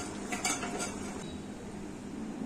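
A spatula clinks against a metal frying pan three or four times in the first second, each knock ringing briefly, over a steady low hum.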